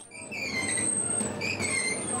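Potato grading machine running, a steady rumbling clatter from its conveyor and rollers, with high wavering metallic squeals that come and go.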